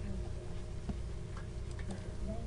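Steady low electrical hum with a few faint clicks: one about a second in and a small cluster near the end.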